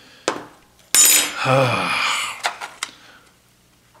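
Small metal hand tools handled on a workbench: a sharp click, then about a second in a loud clattering metal clink with a high ringing, as steel tweezers are set down by the aluminium resin-vat frame, followed by two light ticks.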